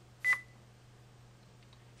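A single short electronic beep with a click about a quarter second in, as the video-capture software starts recording; after it only a faint steady hum.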